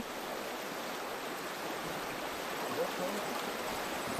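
Steady, even noise of a shallow river running over a stony bed; the river is running high after overnight rain.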